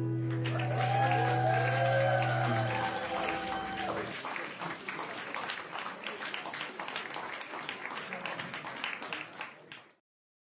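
The last acoustic guitar chord rings out and fades over the first few seconds while an audience claps, with a few cheers early on. The applause carries on alone after the chord dies and is cut off abruptly at the end.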